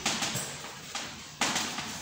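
Chalk scratching on a blackboard as words are written, with a louder stretch of writing starting about one and a half seconds in.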